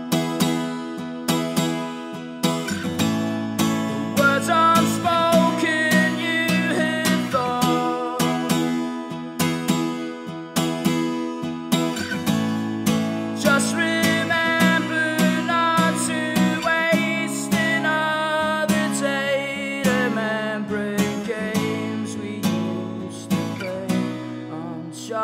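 Acoustic guitar strummed in a steady rhythm, with the chord changing every few seconds.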